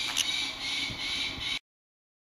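A green-cheeked conure gives one short, sharp squawk just after the start, over a steady background hiss. The sound cuts off suddenly about one and a half seconds in.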